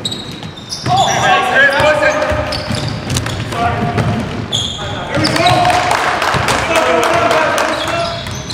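Basketball game sounds on a hardwood gym court: the ball bouncing, short high sneaker squeaks, and players shouting and calling to each other, echoing in a large hall.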